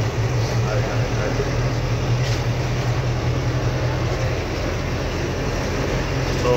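A bus running, heard from inside the passenger cabin: a steady low engine hum over even road noise, the hum easing a little about four and a half seconds in.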